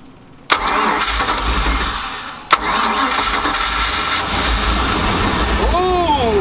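Carbureted MerCruiser sterndrive engine catching suddenly about half a second in and running, freshly primed through the carburetor. It sags for a moment, a sharp click comes about halfway, and then it runs steady at a fast idle.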